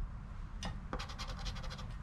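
Coin scraping the scratch-off coating from a lottery ticket: two short scrapes about two-thirds of a second and a second in, over a faint steady background.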